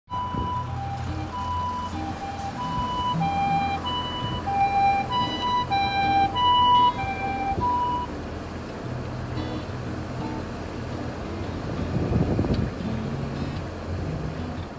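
Japanese ambulance siren sounding its two-tone high-low call over and over, loudest around six seconds in, then stopping at about eight seconds. The steady noise of heavy road traffic runs underneath, with a vehicle passing louder near the end.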